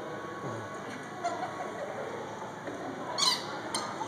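Puppies at play, with a short high-pitched squeak a little over three seconds in and a fainter sharp click just after it.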